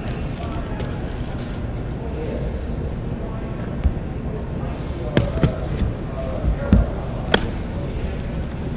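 A cardboard shipping case of trading-card boxes being handled and opened, with a few sharp knocks and taps in the second half over steady low background noise.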